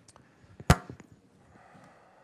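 A single sharp knock on the microphone about a third of the way in, followed by faint handling noise.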